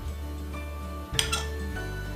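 A metal fork clinks twice in quick succession against a ceramic plate a little after a second in, with a short ring after each, over steady background music.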